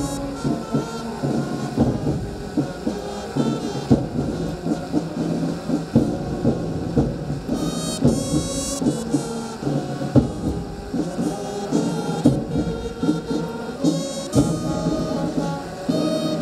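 A brass band playing music.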